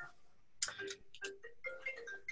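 Mobile phone ringtone starting about half a second in: a quick run of short, high pitched notes, several a second, playing faintly.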